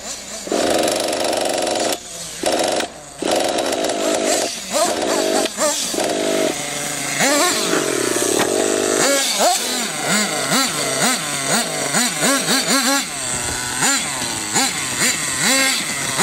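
Small nitro glow engine of a radio-controlled monster truck running at high revs. It is steady at first and drops briefly twice early on, then through the second half it revs up and down in quick repeated throttle blips.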